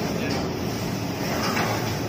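Steady commercial-kitchen din: a constant machine hum, like ventilation running, with faint background voices coming through about a second and a half in.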